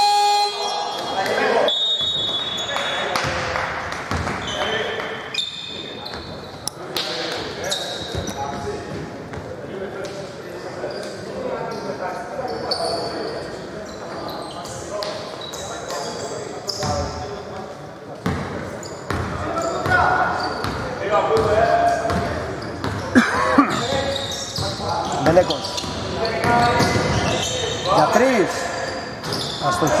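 A basketball bouncing on a hardwood court, in short repeated thuds, with players' voices echoing in a large sports hall.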